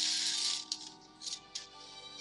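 Steel BBs poured into a Red Ryder BB gun's loading port. A rushing rattle at the start, then a few short rattles as the last BBs trickle in, over soft background music.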